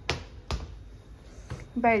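Two sharp clicks about half a second apart, then a fainter click about a second later.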